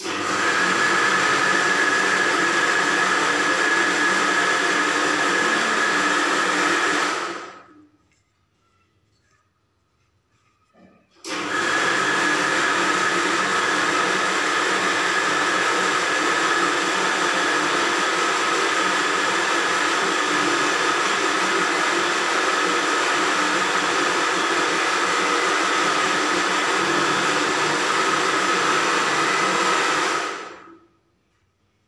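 A small electric appliance motor running with a steady whirring hiss. It stops about seven and a half seconds in and starts again about three and a half seconds later.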